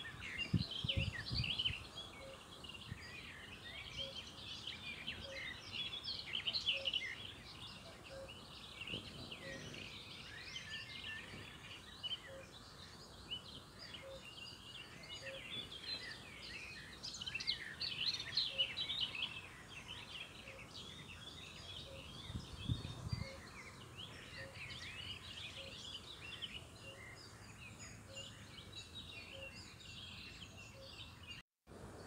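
Many small birds singing and chirping in overlapping calls throughout. Underneath is a faint, regular tick about every two-thirds of a second, with brief low rumbles about a second in and again about three-quarters of the way through.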